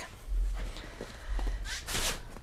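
Footsteps on a travel trailer's floor: a couple of low, dull thuds with a few faint small knocks.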